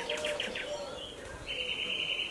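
Songbirds singing: a quick trill of about eight rapid repeated notes in the first half second, then a single held high note about a second and a half in.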